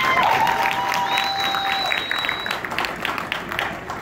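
Crowd applauding in a stadium grandstand, with several people whistling long held notes over the clapping in the first couple of seconds, one sliding up into its note; the applause thins toward the end.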